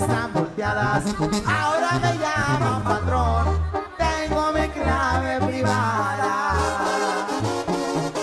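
Regional Mexican music with brass and a low bass playing separate held notes under a wavering melody line.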